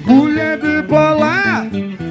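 Live band music: a voice sings a melodic line with a pitch bend about a second and a half in, over sustained guitar and keyboard notes.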